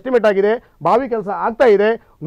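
Only speech: a person talking in a lively studio debate, with a brief pause a little over half a second in.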